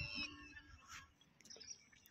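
A bird calling: a short high chirp right at the start, falling a little in pitch, then only faint outdoor background with a few small clicks.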